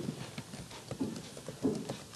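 Computer keyboard being typed on: irregular key strikes, several a second.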